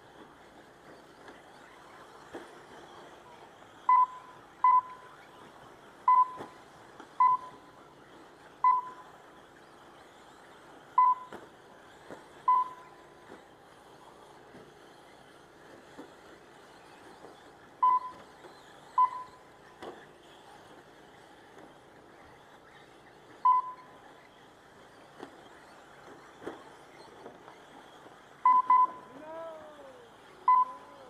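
RC race lap-timing system beeping as cars cross the start/finish line: about a dozen short single beeps at uneven intervals, a few in quick pairs. Under them is a low steady background of track noise with a few faint knocks.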